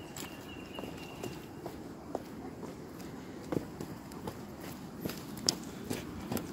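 Footsteps of a person and a dog walking down a rocky dirt trail: irregular scuffs and crunches on stone and gravel, with a couple of sharper clicks about three and a half and five and a half seconds in.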